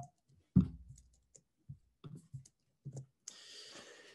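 A series of short soft clicks and knocks, the loudest a low thump about half a second in. A soft hiss, a breath in, comes near the end.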